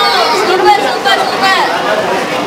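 Several voices chattering at once, high-pitched children's voices among them.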